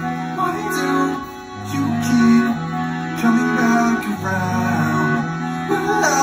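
Chromatic button accordion playing held chords that change about every second, in a live band performance.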